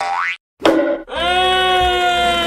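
Cartoon sound effects: a quick rising whistle-like glide, a short pause, a sudden hit, then a long steady pitched tone held from about halfway through.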